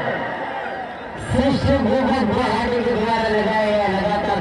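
A man's commentary speech; the voice is softer in the first second and picks up again about a second in.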